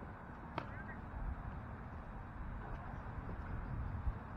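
Faint outdoor field ambience: a steady low rumble with distant voices, and one sharp click about half a second in.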